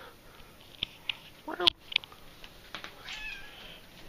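An orange-and-white domestic cat gives a short, rising meow about one and a half seconds in, with a few light clicks around it and a fainter high cry near the end.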